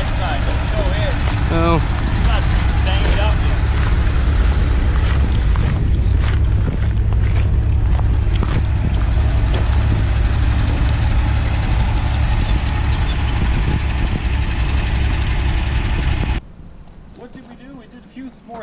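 1964 GMC pickup with its 305 V6 driving on a gravel road: steady engine and tyre noise under a heavy low rumble. It cuts off abruptly near the end.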